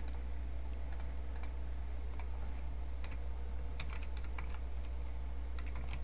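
Computer keyboard being typed on: scattered, irregular key clicks as a short word is typed out, over a steady low hum.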